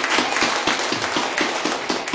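Congregation applauding, a fast, irregular patter of many hands clapping, with one pair of hands clapping close by.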